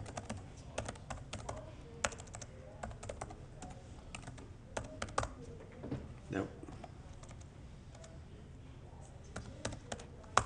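Typing on a computer keyboard, picked up by a distant room microphone: irregular key clicks with a few louder strokes. A single short word is spoken about six seconds in.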